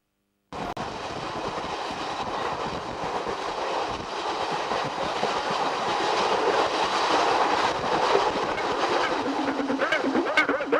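Train running along the rails, a steady rumble that starts suddenly about half a second in and slowly grows louder.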